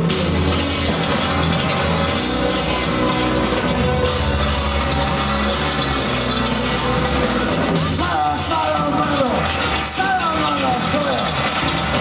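Live neofolk/industrial band playing loud, with electric bass guitar and drums carrying a heavy low end. A man's vocal through the PA comes in over the band about eight seconds in.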